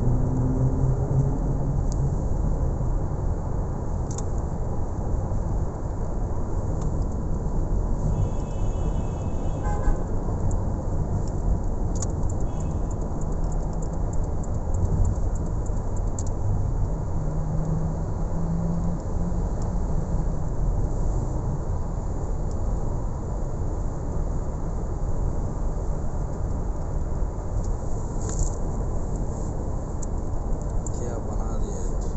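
Steady road and engine noise of a car driving along, heard from inside the cabin.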